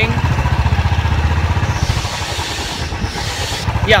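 Royal Enfield Bullet Electra 350's single-cylinder engine on its stock exhaust, running under way as a steady low thump of firing pulses; the engine is new and still being run in. The thumping eases about two seconds in, with a hiss of wind, and picks back up near the end.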